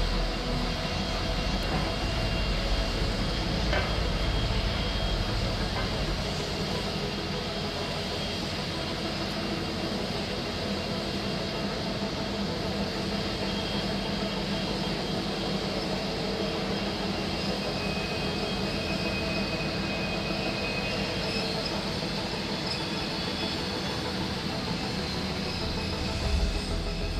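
Milwaukee Road 261, a 4-8-4 steam locomotive, passes close by hauling its excursion train: a steady rumble of wheels on rail, heaviest in the first several seconds as the locomotive goes by, then lighter as the diesel and passenger cars follow. A thin high wheel squeal comes and goes.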